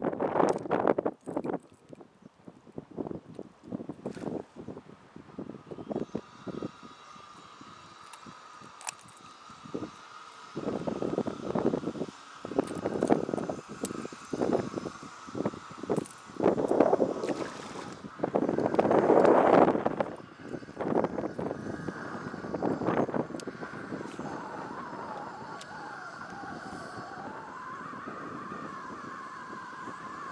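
Wind buffeting the microphone in uneven gusts, heaviest around the middle, with a faint steady drone underneath through the second half.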